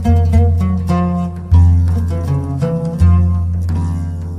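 Traditional Arabic oud music: a plucked melodic line with deep bass notes sounding about every second and a half.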